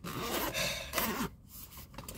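Rustling and scraping as a packed cosmetic bag is handled. One longer rustle comes first, and a second short one follows near the end.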